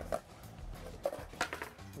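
A few sharp clacks of a skateboard deck and wheels as a skater pops and lands a kickflip, over a background music bed.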